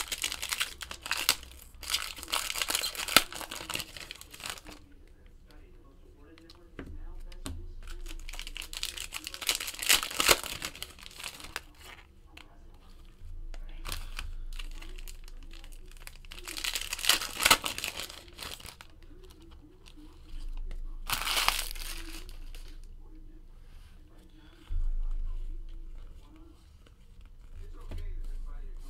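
Foil trading-card packs being torn open and crinkled by hand, in about four bursts of crackling with quieter gaps between.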